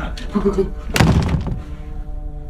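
A single loud thunk about a second in, ringing out briefly, over a steady music bed.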